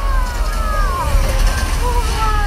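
Stunt seaplane crash-landing into water: a loud steady low rumble, with several overlapping tones falling in pitch over it.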